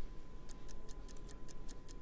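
Countdown-clock ticking sound effect: quick, even ticks, about six a second, starting about half a second in.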